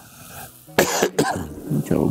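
A man coughing: a sharp cough a little under a second in, quickly followed by a second one.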